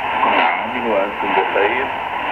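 Arabic-language voice from a China Radio International shortwave broadcast on 6100 kHz, heard through the speaker of a Sony ICF-SW7600GR portable receiver. The sound is thin and narrow, with a steady background hiss under the voice.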